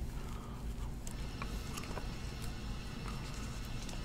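Quiet room tone: a low steady hum with a few faint, soft clicks scattered through it.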